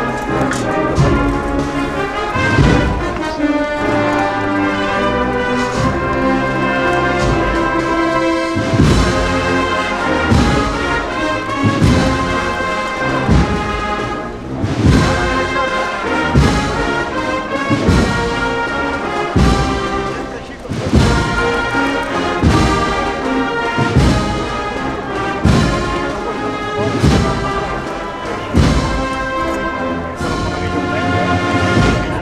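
Brass band playing a Holy Week processional march: sustained brass chords, joined from about nine seconds in by a steady drum beat roughly once a second.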